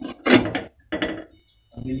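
Glass pan lid with a metal rim being set and settled on a nonstick frying pan: a few short clunks and rattles in the first second.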